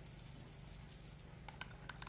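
A few light metallic clinks from a silver charm bracelet jangling on a moving wrist, coming near the end, over a low steady room hum.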